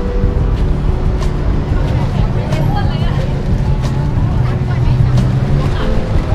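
Busy city street ambience: a steady rumble of road traffic with indistinct voices of people mixed in.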